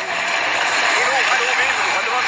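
Raised voices of several people talking and calling out over a steady, loud rushing noise.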